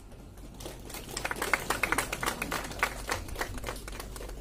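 Scattered clapping from a small audience: an irregular patter of hand claps that starts about half a second in and keeps going.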